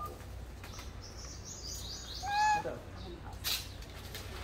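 Long-tailed macaque giving a single short coo call about halfway through, one clear pitched note. A run of faint high chirps comes just before it, and a brief knock near the end.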